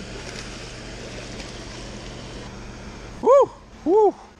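Steady rush of water released through a dam spillway. Near the end, a person whoops twice, each call rising and falling in pitch.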